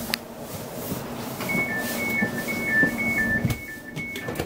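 Class 720 train's door warning tones: a high-low two-tone beep repeating about twice a second, starting about one and a half seconds in, with the train stopped at the platform. Under it runs a low steady hum from the carriage, with a click at the start and a thump near the end.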